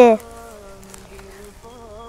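A child's held recitation of an Arabic letter name (ḍād) cuts off just after the start, leaving a faint steady hum for the rest.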